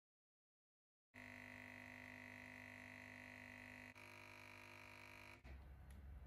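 Espresso machine's pump running with a faint, steady hum as coffee pours into the cup. It starts abruptly a second in, shifts pitch slightly about four seconds in, and cuts off near the end, leaving a low rumble.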